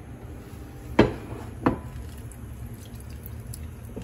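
Halved lemons squeezed by hand over a glass measuring cup, juice dripping into the glass. Two sharp knocks, one about a second in and a smaller one soon after.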